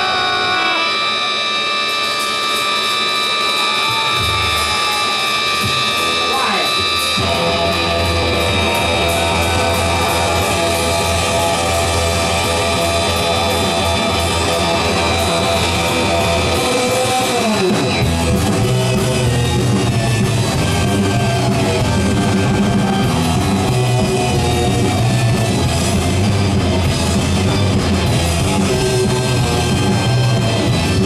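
Live garage rock band playing: a held organ chord opens, bass comes in after a few seconds, and the full band with drums kicks in about 18 seconds in.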